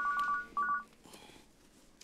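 Mobile phone ringing: an electronic two-tone trilling ringtone in two short bursts, the second shorter than the first.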